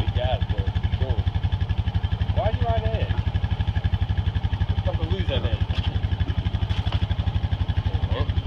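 A motor vehicle's engine idling close to the microphone, a steady fast low throb that does not change, with faint voices calling over it.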